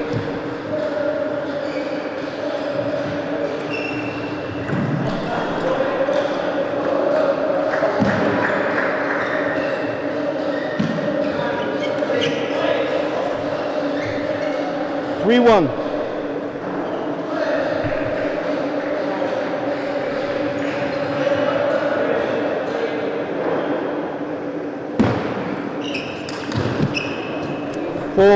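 A few isolated sharp knocks of a table tennis ball on table and paddle, over a steady hum and murmuring voices in a large hall.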